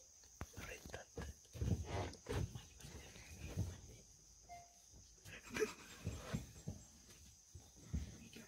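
Forest ambience: a steady high-pitched insect drone, over which come quiet voices and a string of short low thumps and rustles, loudest about two seconds in and again near six seconds.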